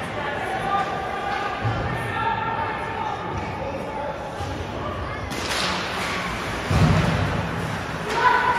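Ice rink ambience during a hockey faceoff: indistinct chatter of spectators and players, with a short scrape about five seconds in and a heavy thud about a second and a half later.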